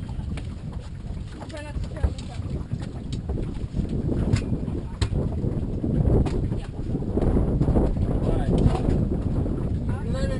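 Wind buffeting the microphone: a steady low rumble that grows louder about halfway through. Muffled voices come through now and then, along with a few sharp knocks.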